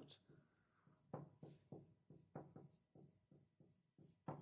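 Marker pen writing on a whiteboard, faint: about ten short, separate strokes, starting about a second in.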